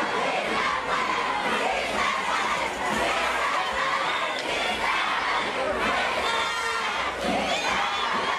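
A large crowd shouting and cheering, many voices at once in a continuous din.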